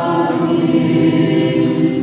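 A church choir singing Orthodox liturgical chant, several voices holding long sustained notes in chord and beginning to die away near the end.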